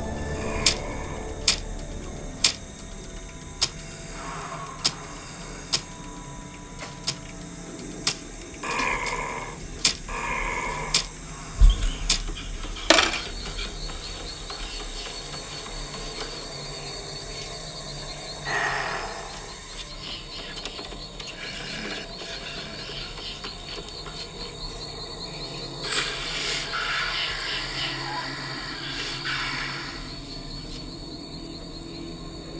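Horror-film sound design: sharp ticks a little under a second apart that fade away, then swelling whooshes, a heavy low thump and a sharp hit, after which a high, fast-pulsing tone holds under further swells.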